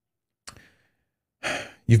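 A man's audible breath, about half a second long, drawn in just before he speaks again, close to a studio microphone; a faint mouth click comes about half a second in.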